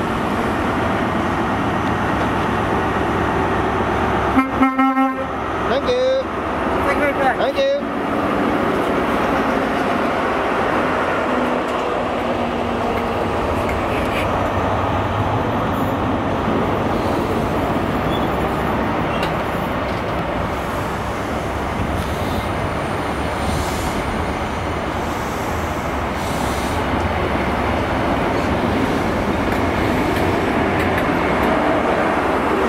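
A GWR Class 43 HST running past at low speed, its diesel power cars and wheels making a steady loud noise. It sounds its horn in short blasts about four to eight seconds in.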